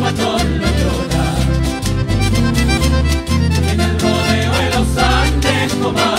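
Chilean folk dance music played live by a band with guitars, instrumental, with a steady beat and a strong bass line.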